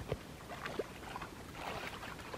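Shallow muddy stream water sloshing and splashing around several people wading and groping in it with their hands, with a sharp knock at the very start.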